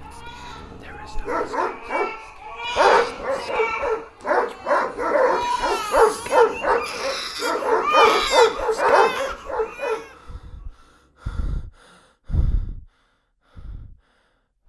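A sound-design soundscape of dogs barking, yelping and whimpering over one another, mixed with voices. It thins out about ten seconds in, and a few short, deep booms follow near the end.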